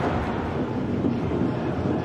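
Steady stadium crowd noise.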